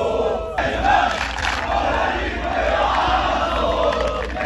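Football supporters chanting together in a stadium stand, a large mostly male crowd shouting a rhythmic chant in unison.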